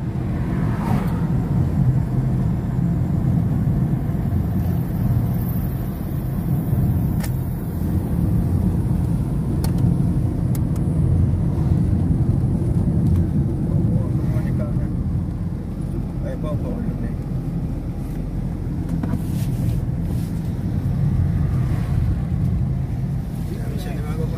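Steady low engine and road rumble of a car driving, heard from inside the cabin.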